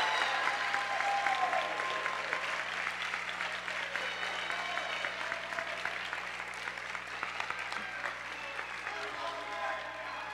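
Large audience applauding, with scattered voices calling out in the crowd; the clapping slowly dies down.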